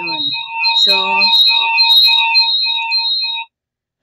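Audio feedback between a laptop and a cell phone joined to the same Zoom call: a shrill ringing of several tones, pulsing about three times a second, that cuts off suddenly near the end. It comes from the two devices being close together, so each microphone picks up the other's speaker.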